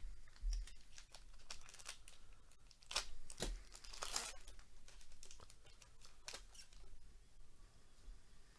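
A 2022 Panini Prizm baseball hobby pack's wrapper being torn open and crinkled by hand, a run of sharp crackles, loudest about three and four seconds in, then lighter rustling as the cards come out.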